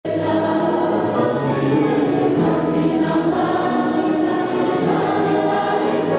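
A choir singing a hymn in many-voiced sustained chords.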